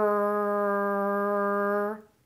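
A woman's voice holding one long, steady "rrr": the American R-colored vowel of "squirrel," made with the tongue tip pulled back only a little, as the correct sound. It stops near the end.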